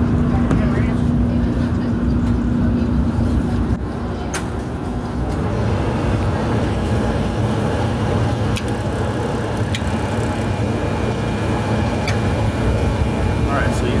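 A Lincoln 1000 gas oven running with a loud, steady low rumble as its burner comes on. A steady hum stops about four to five seconds in, with a sharp click at about the same time.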